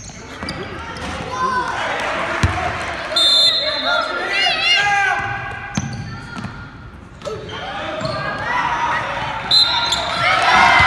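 Spectators calling out and shouting in an echoing gymnasium during a youth basketball game, with a basketball bouncing on the hardwood court. Short high sneaker squeaks come a few seconds in and again near the end.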